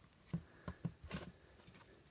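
A few faint, short clicks and taps as a handheld digital multimeter is handled on a workbench, its range dial just set.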